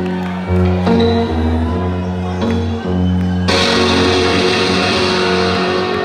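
Live amplified music: an electric guitar playing held chords over a deep bass line. A bright, hiss-like wash joins about halfway through.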